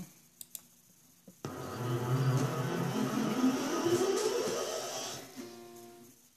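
Acoustic guitar with a capo, strummed: after a quiet first second and a half a full chord sounds suddenly, rings for a few seconds and fades near the end.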